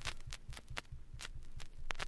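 Surface noise of a 33⅓ rpm vinyl record still playing after the music has ended: a faint hiss with several sharp pops and crackles, over a low, fast throbbing rumble.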